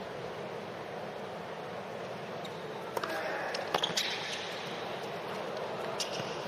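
Low, steady murmur of a hushed arena crowd, then a tennis rally from about three seconds in: several sharp hits of racket strings on the ball and the ball bouncing on the hard court.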